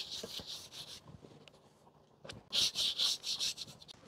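Hands handling sheets of fresh, floured pasta dough on a floured tabletop: soft rubbing and rustling in two spells, the second starting about two seconds in.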